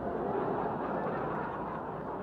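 An audience laughing: a steady blend of many voices.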